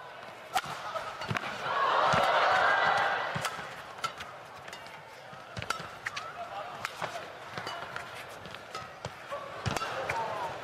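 Badminton rally: sharp racket strikes on the shuttlecock about once a second, with shoe squeaks on the court between them. A crowd swell rises about a second and a half in and fades about three seconds in.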